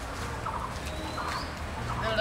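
Birds calling: short calls repeated a few times, with one rising whistle, over a steady low background hum.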